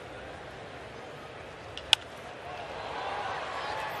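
Ballpark crowd ambience, with one sharp crack of a bat hitting a pitched baseball about two seconds in; the crowd noise then swells slightly as the ball flies to center field.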